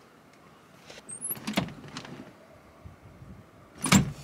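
Handling noises inside a car's cabin: a few faint knocks and rustles around the middle, then one sharp knock just before the end.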